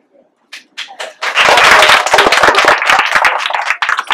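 A room of children clapping: a few scattered claps about half a second in, swelling into loud applause a second later, with voices mixed in.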